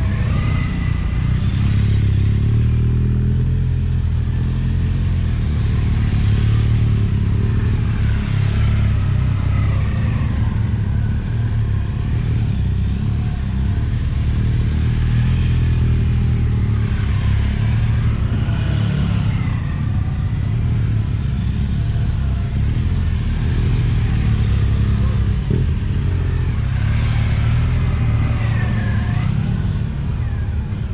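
Several large touring motorcycles riding slowly around cones, their engines rising and falling in pitch as they pass close by and pull away, over a constant low rumble.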